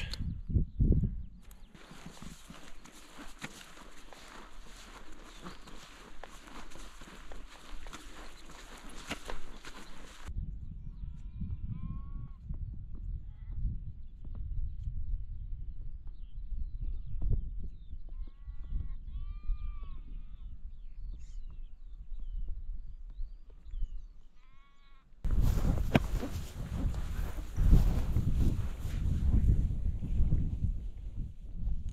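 Wind rushing over the microphone, with a lull in the middle in which sheep bleat faintly several times in short calls. The wind noise comes back loud near the end.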